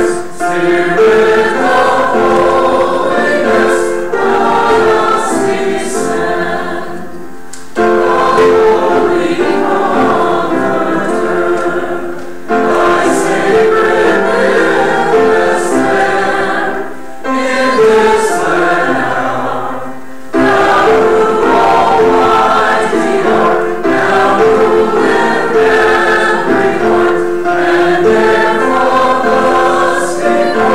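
A church choir and congregation singing a hymn together, phrase by phrase, with short breaks between lines.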